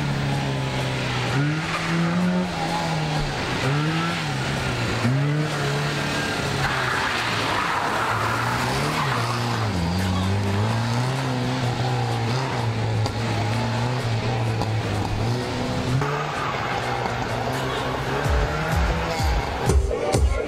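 Renault 5 engine driven hard through a slalom course, its note repeatedly revving up and dropping back as the driver accelerates, lifts and changes gear. The tyres squeal briefly about midway.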